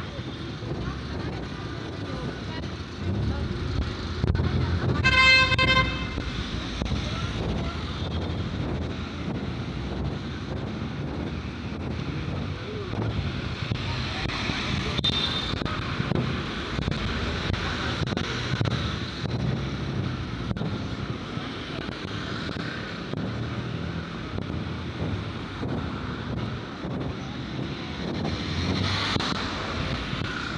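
City street traffic running steadily, with passers-by talking and a car horn sounding once for about a second, about five seconds in.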